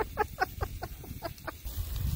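A man laughing in a quick, even run of short 'ha' syllables, each falling in pitch, about six a second, that stops about a second and a half in.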